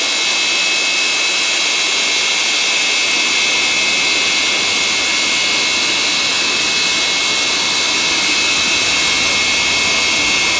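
Steady, high-pitched jet turbine whine from a parked Antonov An-225 Mriya, several tones held steady over a constant rushing hiss.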